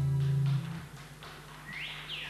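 Acoustic guitar chord ringing, then damped about half a second in, leaving a quiet pause with a short squeak near the end.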